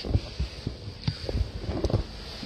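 A series of low, dull thumps and handling noise as a person climbs into a car's driver's seat with a handheld phone.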